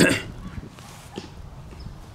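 A brief rustle of handling noise right at the start, then a low rumble of wind on the microphone with a few faint taps.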